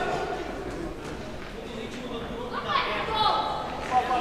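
People's voices in a boxing hall, as spectators and corner men call out during the bout, with a louder shout about three seconds in.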